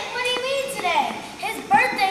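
Children's voices talking, high-pitched and in short phrases.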